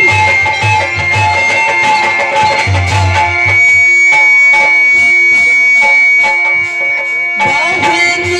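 Live band music with a harmonium holding long, steady notes over a rhythmic beat on the drums.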